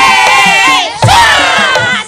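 Several female sinden voices singing and calling out together through microphones, loud and high, with long held notes that slide in pitch and overlap.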